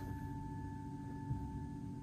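A handbell's ring dying away: one steady tone with a higher overtone that fades out near the end.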